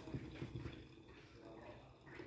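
Quiet kitchen room tone: only faint, low background noise with no distinct sound.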